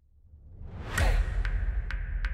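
Rising whoosh sound effect that swells to a peak about a second in, then gives way to a deep bass rumble with sharp clicks: the start of a segment-intro music sting.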